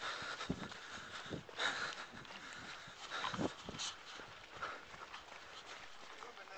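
Footsteps of runners thudding irregularly on a dirt trail, with a few hard, panting breaths close to the microphone.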